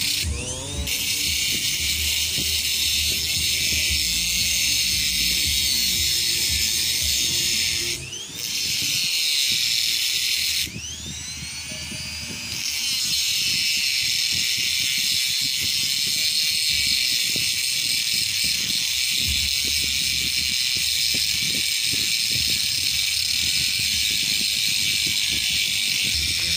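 Pneumatic die grinder running at high speed with a steady whine and hiss as it cuts a grease groove into a ball joint's metal socket. It drops off briefly about eight seconds in and again for about two seconds around eleven seconds in, whining back up in pitch each time.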